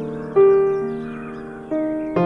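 Soft background piano music: sustained notes struck about a third of a second in and again near the end, each fading away slowly.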